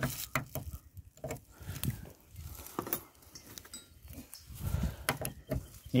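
Keys clinking and a key being tried in the door lock of a BMW E30, a run of small irregular clicks and scrapes with low knocks from handling.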